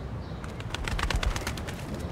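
Pigeons, with a quick run of sharp clicks starting about half a second in and a low thump near the middle.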